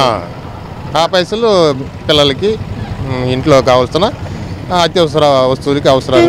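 Speech only: a man talking continuously in Telugu.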